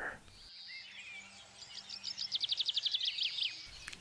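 Songbirds chirping and twittering, with a fast trill of rapid, evenly spaced notes from about two seconds in.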